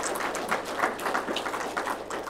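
Audience applauding: a dense patter of many hands clapping.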